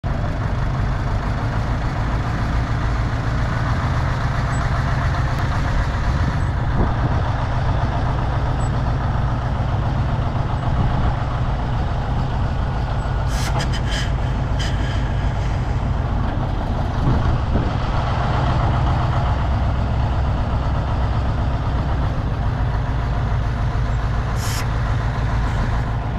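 Diesel engine of a Tadano TG500M truck crane running steadily as the crane drives slowly across gravel. A few short, sharp high sounds come about halfway through, and one more near the end.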